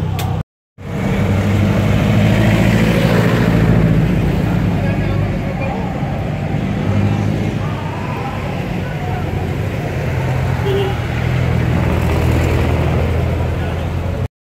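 Car engine idling with a steady low exhaust rumble, broken by a brief drop to silence about half a second in.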